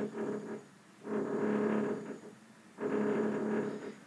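A steady-pitched humming drone in three bursts of about a second each, with short quiet gaps between them: an unidentified background noise.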